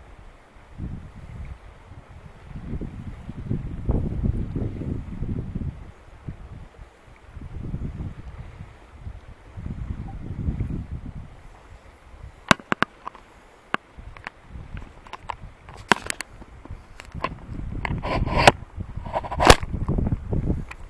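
Wind buffeting the microphone in uneven gusts, then a run of sharp clicks and knocks in the last eight seconds from hands handling the camera.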